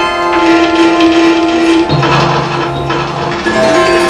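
Live experimental noise music from amplified electronic noise instruments and effects pedals: a dense layer of many held tones over a steady mid pitch. A lower drone enters about two seconds in and drops out near the end.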